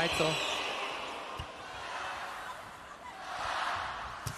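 Indoor arena crowd hum that fades and then swells again near the end, with a single sharp thud about a second and a half in: a hand striking a volleyball on the serve.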